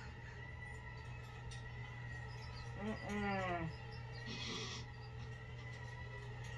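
Horror film soundtrack playing over a TV: a steady low drone of held tones, with a brief low vocal cry that bends in pitch about three seconds in and a short hiss just after.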